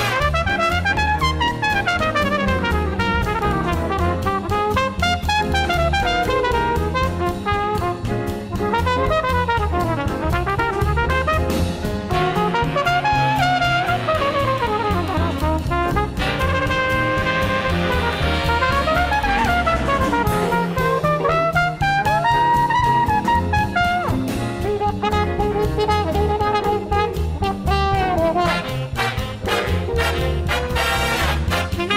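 Big-band swing music in an instrumental break: a brass section playing melodic runs that rise and fall, over a steady drum-kit and bass beat.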